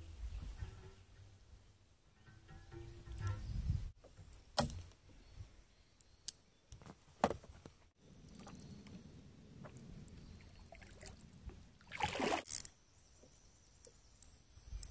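Kayak paddling: a double-bladed paddle dipping and splashing in calm water, with a louder splash about twelve seconds in. A few sharp knocks of gear on the boat come through, the loudest about four and a half seconds in.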